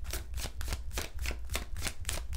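Tarot deck being shuffled by hand, a quick, even run of card slaps at about six or seven a second.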